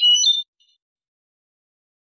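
European goldfinch (jilguero) singing in the Malaga song style: a short phrase of high, clear notes that stops about half a second in, followed by silence.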